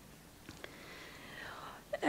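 Faint pause in a talk: a couple of small mouth clicks about half a second in, then a soft breath before the speaker resumes.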